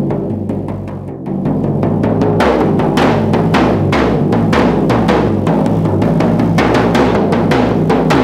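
Hand-made frame drum (buben) beaten loudly with a padded beater, each stroke ringing on in a deep boom. The strokes quicken to roughly four or five a second about two and a half seconds in.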